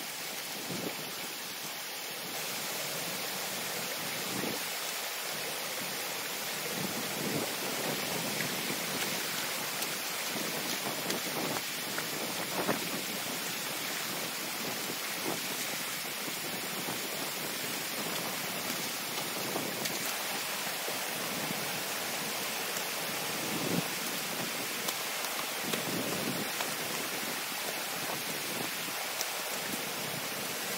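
Water rushing steadily through a breach in a beaver dam and spilling over its crest. Brief knocks and splashes break through now and then as sticks are pulled out of the dam.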